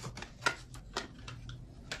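Tarot cards being handled and shuffled: a few short, soft clicks and flicks of card stock, the sharpest about half a second in.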